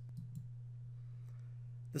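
A few faint computer-mouse clicks in the first half-second, over a steady low electrical hum.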